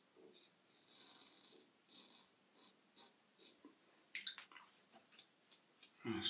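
Adjustable double-edge safety razor, set at about 3.5 to 4, scraping through lathered stubble in short strokes: a faint, crisp crackle about twice a second, with one longer stroke about a second in and a louder scratchy stroke about four seconds in.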